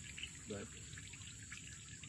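Faint, steady trickle of pear juice running out of a screw-type fruit cider press.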